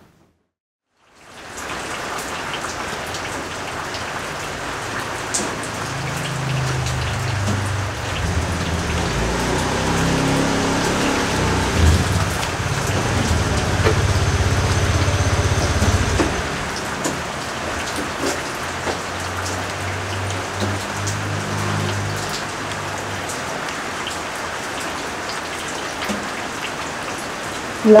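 Steady rain hiss that starts about a second in and keeps an even level, with a low hum in the middle stretch.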